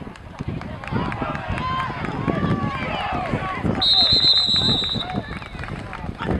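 Several voices shouting and cheering over one another during a football play, then a referee's whistle blows steadily for about a second, about four seconds in.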